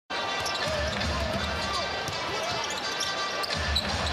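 A basketball being dribbled on a hardwood court, low thumps under a steady hum of arena crowd voices.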